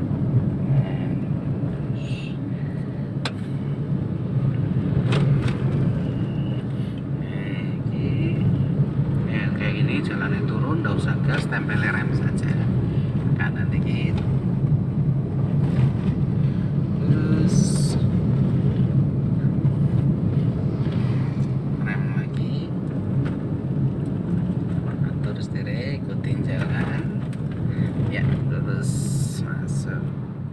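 Steady low hum of an automatic Toyota's engine and tyres heard from inside the cabin while driving, with indistinct voices now and then.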